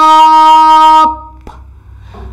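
A woman's voice holding one long, steady vocal note, cut off about a second in, followed by a single faint click.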